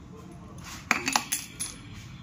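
A steel padlock clinking and knocking on a marble countertop as it is handled and picked up. There are four or so sharp metallic clicks in quick succession in the second half.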